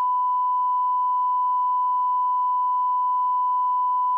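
Steady 1 kHz reference tone, the line-up test tone that accompanies colour bars on videotape, holding one unchanging pitch.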